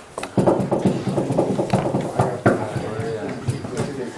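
Indistinct talk among several people in a room, with a few short knocks.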